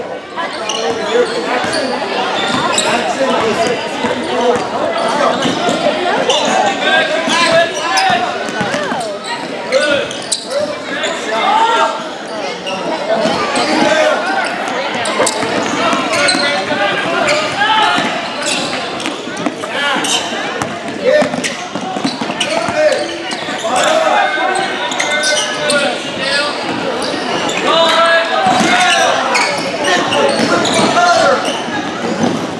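A basketball bouncing repeatedly on a hardwood gym floor during play, with people's voices echoing in the hall.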